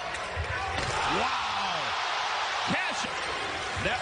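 Live basketball game audio: steady arena crowd noise with a basketball bouncing on the hardwood court. A few short rising-and-falling squeaks come through, typical of sneakers on the court.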